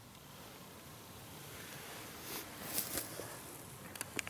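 Faint rustling of clothing and camera handling over a quiet outdoor background, with a few soft clicks between two and three seconds in as the camera is moved.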